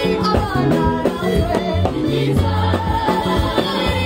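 Choir singing a gospel song over a band, with a bass line and a steady dance beat.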